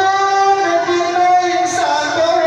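Man singing a Pashto naat through a microphone and loudspeaker, holding one long note whose pitch steps slightly, with a break near the end.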